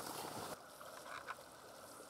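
Faint, short duck quacks, a couple of them about a second in, over a quiet background.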